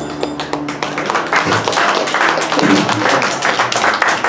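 An acoustic string trio's last ringing notes die away, then a small audience claps with scattered clapping and voices from about half a second in.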